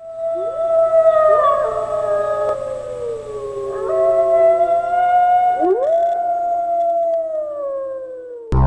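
A chorus of wolves howling: several long howls overlap, each sliding up in pitch and then held as it slowly sinks, fading near the end.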